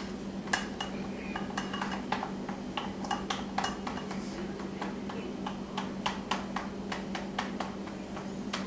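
A kitchen utensil clinking and scraping against a strainer and pan as chorizo sauce is worked through the strainer: a string of light, irregular clicks, about two or three a second.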